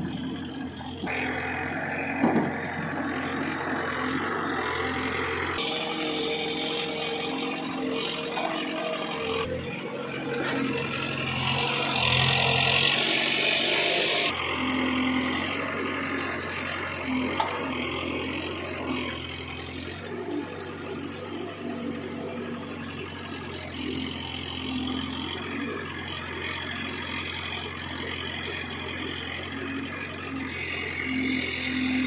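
CASE 851EX backhoe loader's diesel engine running under load as the backhoe digs and swings soil into a trolley. The engine note changes abruptly several times.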